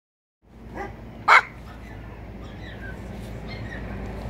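A Pomeranian spitz barks twice about a second in, a short yap followed by a much louder, sharper bark.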